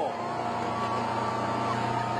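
Tow boat's engine running at a steady pitch at towing speed, over a steady rushing noise.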